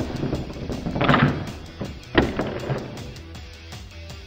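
A Bakugan toy ball, Darkus Nillious, is rolled across a tabletop over background music. A rush of rolling noise comes about a second in, then a sharp click a little after two seconds as the spring-loaded ball snaps open into its figure.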